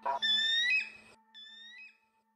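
Two high, piercing cries of a bird of prey, each rising a little and then breaking off. The first is loud, and a fainter second one comes about a second later.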